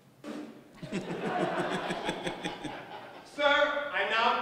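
A room of people laughing and chuckling, then a man's voice rings out loudly near the end.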